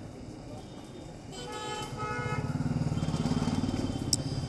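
Street traffic: a vehicle horn sounds once, for about a second, about a second and a half in, then a motor vehicle engine passes close, growing louder over the second half.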